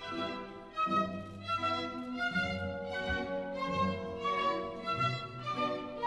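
Orchestral classical music with a violin carrying the melody over lower strings, in held notes that move every half second or so.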